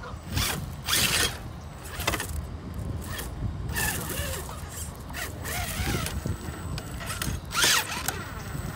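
Traxxas TRX-4 RC crawler's electric motor and geared drivetrain whirring in short, irregular bursts as it creeps over rocks, with its tyres scraping on stone.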